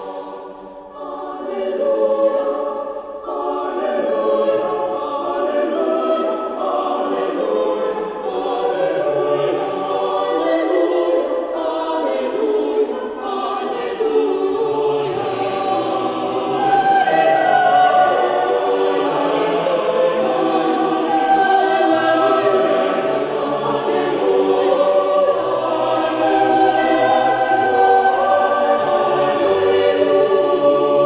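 Mixed-voice chamber choir singing sacred choral music in several parts, the voices moving together in harmony. It swells and grows louder after about fifteen seconds.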